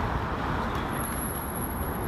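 City street traffic noise: cars passing on the road with a steady rumble and tyre hiss, recorded through a phone's built-in microphones. A thin high-pitched whine starts about a second in.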